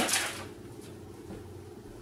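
A plastic shaker bottle being shaken by hand to mix a protein shake: the last stroke or two in the first half second, then only a low steady room hum.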